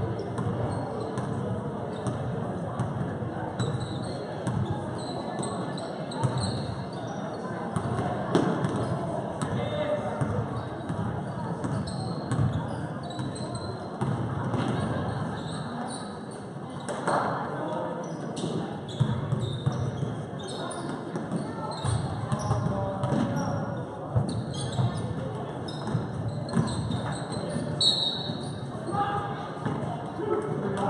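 A basketball being dribbled and bouncing on a gym floor during live play, with scattered short knocks and brief high squeaks of sneakers, over a steady murmur of spectators' and players' voices in a large gym.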